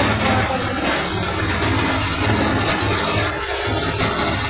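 Rice mill (paddy huller) running steadily, with milled rice pouring from its metal chute into a sack, under background music.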